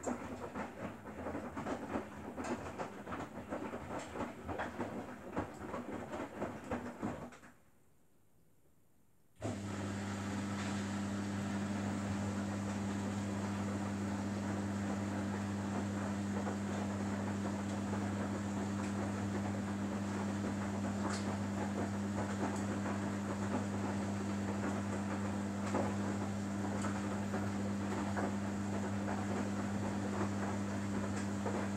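Samsung Bespoke AI front-loading washing machine mid-wash: the drum tumbles the wet laundry with an uneven rumbling and clatter, stops for about two seconds, then the machine resumes with a steady low hum.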